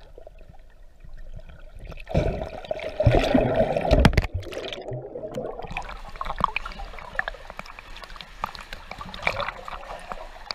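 Water splashing and sloshing around a camera at the surface as a swimmer moves through the water. It sounds dull and muffled at first, then a loud rush of splashing comes about two seconds in as the camera breaks the surface, followed by continuous crackling, lapping splashes.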